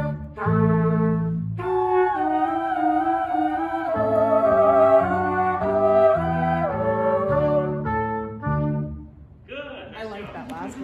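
A small ensemble of brass and woodwind instruments plays slow sustained chords that change every half second or so. The final chord is released about nine seconds in, and a voice follows near the end.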